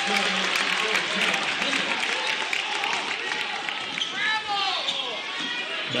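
Crowd noise and chatter in a school gymnasium during a basketball game, with a ball bouncing on the court and a few short high squeaks about four seconds in.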